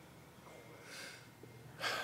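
A man's breaths picked up by a close podium microphone in a pause between sentences: a faint breath about a second in, then a louder, sharper intake of breath near the end.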